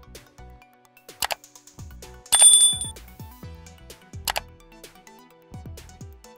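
End-card sound effects over quiet background music: a sharp mouse-click about a second in, a bright bell ding a little over two seconds in that is the loudest sound, and another click a little after four seconds.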